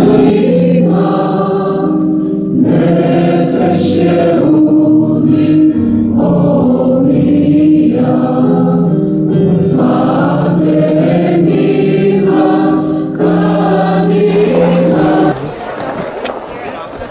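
A choir singing a slow song in long held chords, phrase after phrase. It cuts off suddenly near the end.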